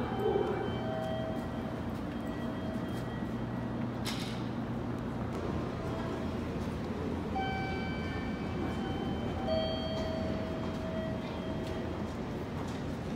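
Steady low hum of a JR Kyushu 885-series electric express train standing at a platform, with faint steady tones coming and going and a single sharp click about four seconds in.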